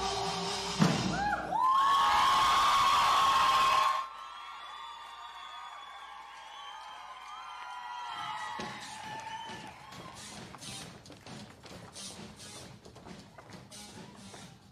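Show choir and band music: a held sung chord, a sharp thump just under a second in, then a loud full ensemble sound that cuts off abruptly about four seconds in. It is followed by a quieter stretch and a run of irregular taps and thuds.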